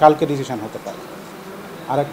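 A man speaking Bengali, who breaks off after about half a second. A steady background noise fills the pause, and he resumes speaking near the end.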